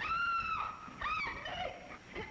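A woman screaming: one long high shriek, then a shorter cry that rises and falls, and a brief lower one.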